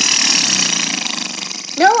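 Cartoon sound effect of a steady hissing spray, like an aerosol can, standing for a queen ant releasing a cloud of pheromone; it starts abruptly and fades slightly over almost two seconds.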